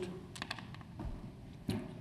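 A few faint, scattered clicks of typing on a laptop keyboard in a quiet room.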